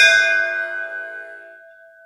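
A single bell struck once, its ringing tone fading away steadily over about two seconds.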